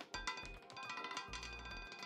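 Faint background music of the live roulette game with steady chiming tones, under light clicks and clinks of the roulette ball bouncing among the wheel's pockets as it comes to rest.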